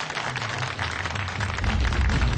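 Studio audience applauding, a dense crackle of many hands clapping. Music with a heavy low bass comes in near the end.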